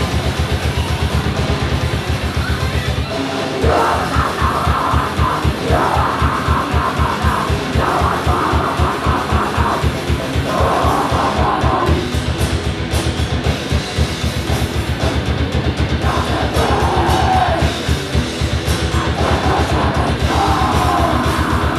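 Live heavy rock band playing loud: distorted electric guitar, bass and drum kit on a fast, driving beat. After a short break about three seconds in, the full band comes back in and a vocalist sings and shouts over it.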